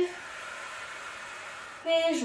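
A woman's long, steady breath out through the mouth: the exhale on the effort of a Pilates bridge as she opens one leg to the side. Her voice comes back in near the end.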